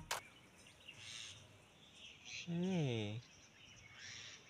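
Background music cuts off at the start, leaving faint outdoor quiet with a few faint high bird chirps. About two and a half seconds in, a person's voice makes one short sound that falls in pitch.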